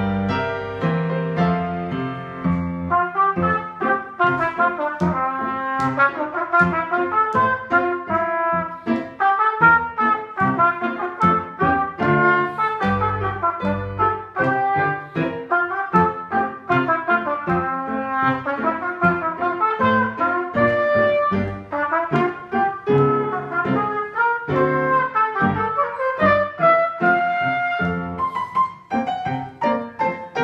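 A piano passage in the first few seconds, then a trumpet playing a lively march-style étude in quick, separated notes.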